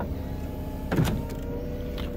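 Electric folding hard-top mechanism of a BMW 4 Series convertible running with a steady motor whine as it raises the stowed roof package for boot access. The whine strengthens about a second in.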